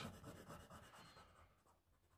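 Faint rubbing of an oil pastel on paper, fading out after about a second and a half, then near silence.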